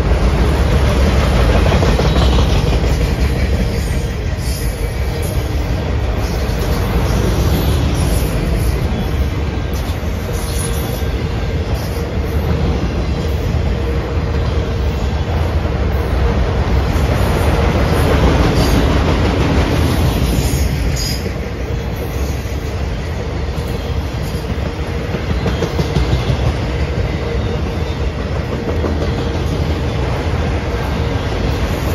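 Autorack freight cars rolling past: a continuous rumble of steel wheels on rail that swells and eases, with scattered clicking over rail joints and a steady whine underneath.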